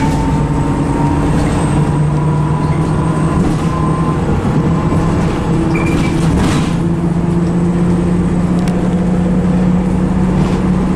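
Bus engine running as the bus drives along, heard from inside the passenger cabin. The steady drone steps up in pitch a couple of times as it picks up speed, with a few short rattles from the body.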